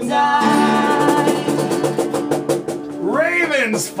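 Two acoustic guitars strummed fast under a long held sung note as a song comes to its end. A man's voice comes in about three seconds in.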